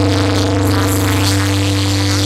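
Live dangdut band music played loud through a concert PA system: a held chord over a steady low bass note.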